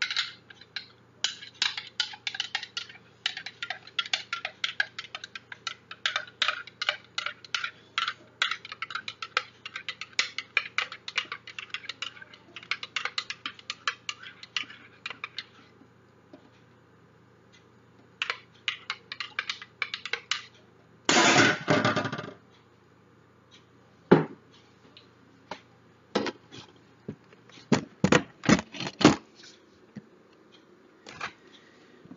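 Metal spoon clinking against the inside of a mug as hot chocolate is stirred: rapid, repeated clinks for about the first half, then another short run. Later come a brief noisy burst lasting about a second, one sharp knock, and a cluster of knocks near the end.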